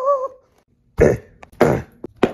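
A person's strained, wavering "eee" voice trails off, then two harsh coughs follow about half a second apart.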